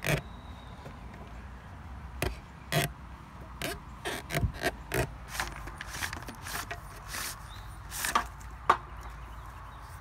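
Irregular short scraping and rustling strokes from hands working a buried PVC electrical conduit: sawing through it with a string, then handling the wires at the cut end. A low steady rumble runs underneath.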